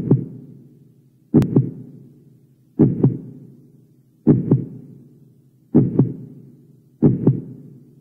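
Cinematic heartbeat sound effect: six slow, deep double thumps about one and a half seconds apart, each pair fading away in a reverberant tail.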